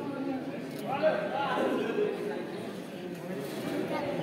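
Indistinct voices of people talking in a large covered sports hall during a stoppage in play.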